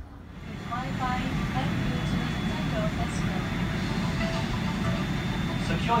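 Steady airliner cabin noise inside a Boeing 777-200: a low roar with a thin, steady high whine, starting about half a second in, with faint voices in the background. A recorded safety announcement begins at the very end.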